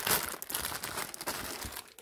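Clear plastic packet of paper die cuts crinkling as it is handled, a dense crackle that is loudest at the start and thins out toward the end.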